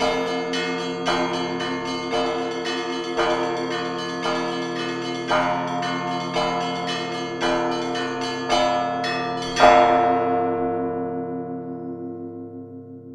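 Church bells rung by rope in a bell tower, struck about once a second, each stroke ringing on over the last. The loudest stroke comes near the end, and the ringing then dies away.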